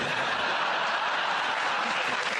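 Studio audience laughing and applauding, a steady, even wash of sound.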